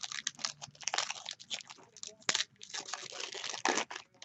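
Foil wrapper of a trading-card pack being torn open and crinkled by hand: a run of crackling rustles with a sharp snap just past the halfway point, and a dense stretch of crinkling near the end.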